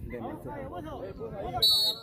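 A referee's whistle gives one short, high-pitched blast near the end, signalling the free shot to be taken, over voices talking nearby.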